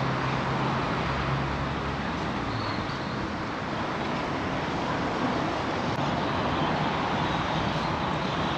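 Steady road traffic noise, with a low engine hum in the first few seconds.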